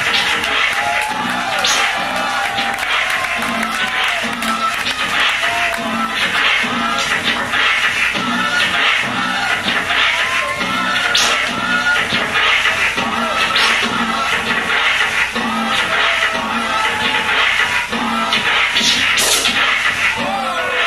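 Turntable scratching on Technics turntables over a hip-hop beat: short rising and falling record sweeps cut in rhythm against a steady kick-and-snare loop.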